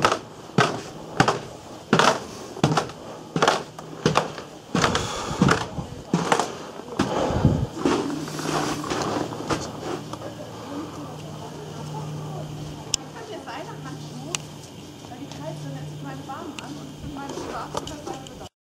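Footsteps on the snow-dusted wooden stair treads of an observation tower, a regular knock a little more than once a second for the first seven seconds or so. After that the steps fade, and a low hum comes and goes several times.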